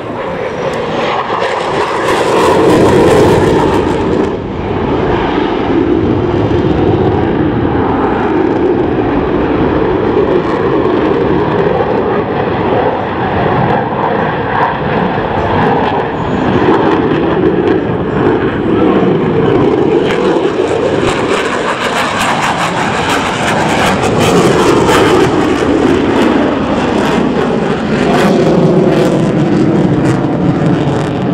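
A U.S. Air Force F-16 fighter's General Electric F110 turbofan at high power, loud and continuous as the jet manoeuvres overhead. It swells about three seconds in, and a ragged crackle builds in over the last third.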